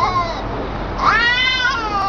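Domestic cat yowling in a face-off with another cat, a threat call. A drawn-out yowl trails off about half a second in, and a second long yowl begins about a second in, rising then falling in pitch.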